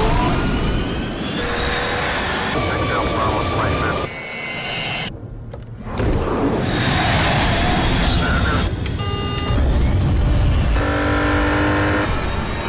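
Jet aircraft engines and a car driving at speed, in an edited mix that changes abruptly every second or two. Around five seconds in the sound drops to a muffled low rumble, and near the end a steady humming tone with overtones comes in.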